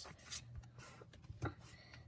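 Faint rustle of Pokémon trading cards sliding against each other in the hand as the top card is moved to the back of the stack, with two soft taps.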